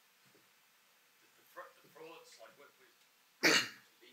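One short, sharp cough into a lectern microphone near the end, from a man who is under the weather, after a few faint, distant spoken words.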